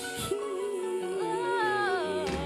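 Female pop vocalist holding one long sung note with a slight vibrato over soft backing music.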